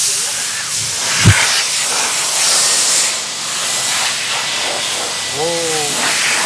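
Handheld cordless electric jet blower blowing a steady rush of air, drying water off a car's body panels. A single short low thump about a second in.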